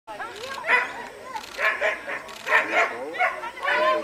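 A dog barking: several short, loud barks roughly a second apart, with people's voices between them.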